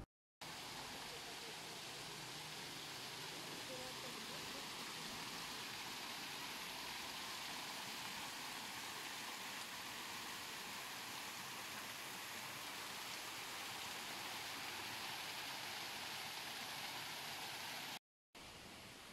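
Water pouring down an ornamental rock waterfall and splashing into its pool, a steady, even rushing that starts abruptly just after the beginning and cuts off at the end.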